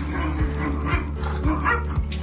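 Belgian Malinois puppies yipping and whining as they jostle at a food bowl, over background music with a steady beat.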